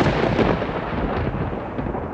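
A loud, deep rumbling noise with crackles, loudest at the start and slowly dying away.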